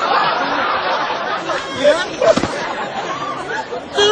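Several people talking over one another, unclear, with a single short knock a little past halfway.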